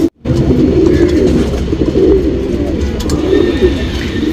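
Domestic pigeons cooing, low rising-and-falling coos one after another, following a split-second gap at the very start.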